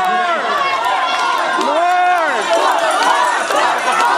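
A group of young women laughing and squealing over one another in excited chatter, voices sliding up and down in pitch.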